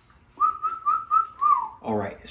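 A man whistling a short phrase of about five notes at nearly one pitch, the last note sliding down, before he starts to speak.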